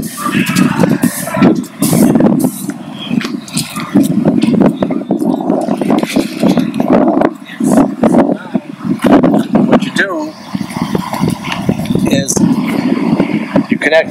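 Indistinct, muffled speech over a constant low rumble of noise, with scattered short knocks.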